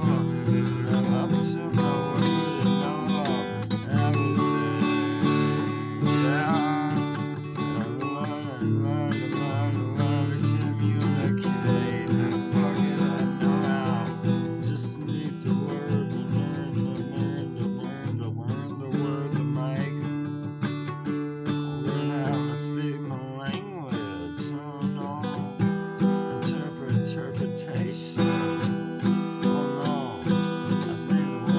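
Acoustic guitar being strummed continuously in a steady rhythm.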